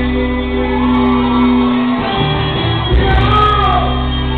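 Amplified live band playing, with a male vocalist singing and shouting into a microphone, echoing in a large hall. The chord changes about two seconds in.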